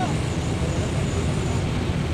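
Steady low drone of a docked ro-ro ferry's engines running, with an even loudness throughout.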